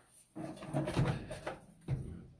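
Sewer inspection camera push cable being fed by hand into the drain line: irregular rubbing and knocking from about a third of a second in, with a sharp click near the end.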